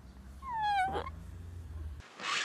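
A short, high-pitched whining vocal sound that falls in pitch, lasting about half a second, over a steady low hum.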